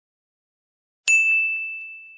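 A single bright bell-like ding sound effect about a second in, one clear ringing tone that fades slowly, with a couple of faint clicks under it. Silent before it.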